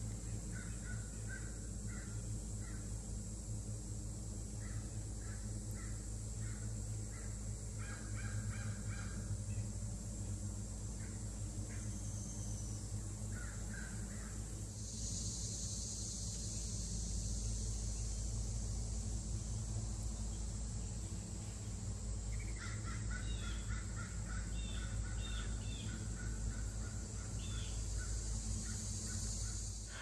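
Crows cawing in runs of short repeated calls. Under them is a steady high-pitched hiss that gets louder about halfway through.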